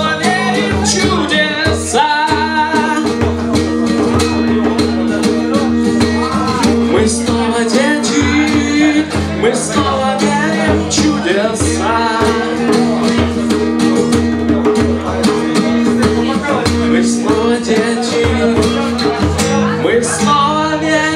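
Acoustic guitar strummed in steady rhythm with a man singing over it, amplified through a PA.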